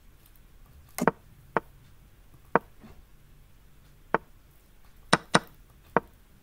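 Online chess move sound effects: short, sharp wooden knocks, one for each piece placed, about seven at uneven intervals as moves are played in quick succession, with two close together near the end.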